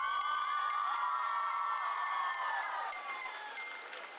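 A small hand bell rung as the ceremonial last bell of the school year: high ringing tones with quick repeated strikes as it is shaken. Under it is a long held cheer from many voices that fades out about three seconds in.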